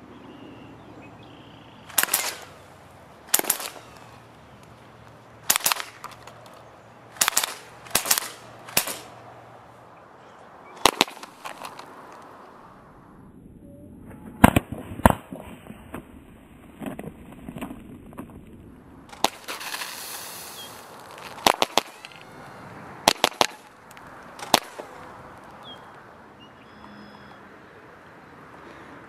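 Evanix Max .25-calibre pre-charged pneumatic bullpup air rifle firing about fourteen sharp shots, irregularly spaced, some single and some in quick pairs a fraction of a second apart.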